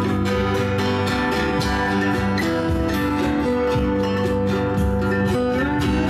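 Live acoustic folk band playing a song: strummed acoustic guitars and a plucked mandolin-type instrument over hand drums and a drum kit keeping a steady beat.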